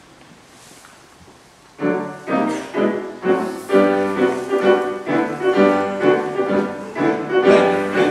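A quiet hall, then about two seconds in a piano starts the accompaniment with a run of loud, accented chords that each ring and fade, moving into fuller sustained chords.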